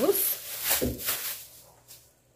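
Thin plastic bag crinkling as it is handled and put down, dying away in the second half.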